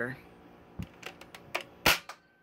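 Spring-powered Nerf Dart Tag Hyperfire blaster, modded with a stronger spring and its air restrictors removed, firing a dart: one sharp, loud pop near the end, after a low thump and a few small clicks of handling.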